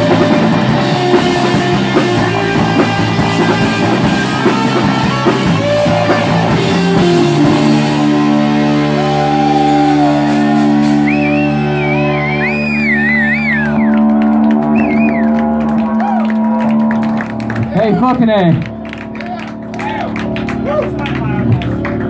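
Live rock band's electric guitars and drums playing loud, then the song ends on long ringing held chords with high wavering guitar squeals over them. The sound cuts away about 17 seconds in, followed by a shout and scattered claps.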